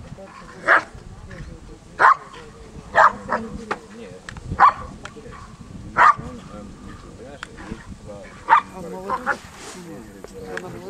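A Giant Schnauzer barking at a helper in the blind during the bark-and-hold: about nine loud, short barks spaced irregularly, with a quick double and triple bark near the end.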